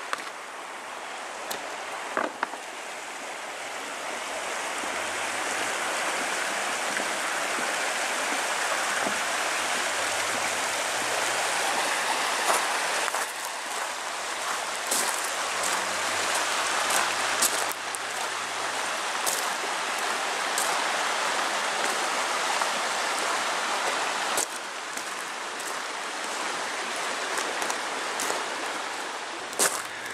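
Shallow rocky brook tumbling over stones: a steady rush of water that grows louder a few seconds in and eases off somewhat near the end.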